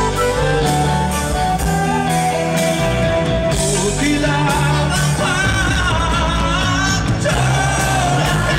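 Live folk-metal band playing a song with singing over electric guitars, drums and violin, recorded from the audience with a loud, dense mix.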